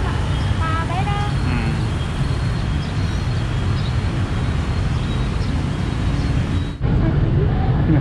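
Steady street traffic with motorbikes passing close by on a busy city road, with brief faint voices about a second in. The sound changes abruptly near the end.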